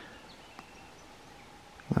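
Quiet woodland background with a single faint tap about half a second in.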